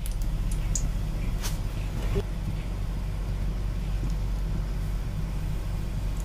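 Pakoras deep-frying in very hot oil in an iron kadhai, a faint sizzle over a steady low hum, with a couple of light clicks in the first second and a half.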